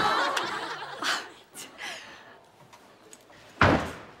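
Laughter that fades out over the first second or so, then a single short, loud thump near the end.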